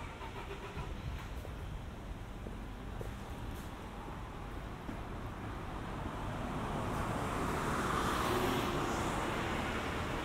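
A car driving past over a low steady rumble of traffic: its noise builds from about six seconds in, peaks near eight and a half seconds, then begins to fade.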